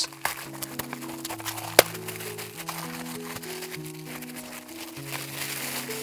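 Soft background music of slow held notes over a scatter of small cracks and crunches from frozen cream being broken into pieces, with one sharper crack nearly two seconds in.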